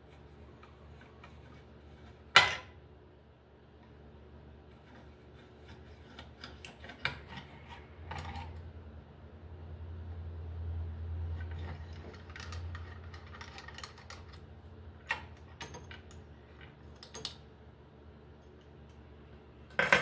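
Screwdriver work on a metal light-fixture housing: scattered small metal clicks and taps as screws are turned out, with one sharp click a couple of seconds in. A low hum rises for several seconds in the middle.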